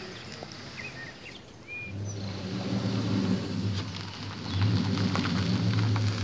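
A car engine running with a steady low hum, coming in about two seconds in and growing louder a little after the middle as the car pulls up close. A couple of faint bird chirps before it.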